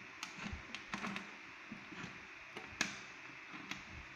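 Banana-plug patch cords being handled and pushed into the panel sockets of an electronics trainer board: a run of small, irregular clicks and taps, the sharpest a little before three seconds in.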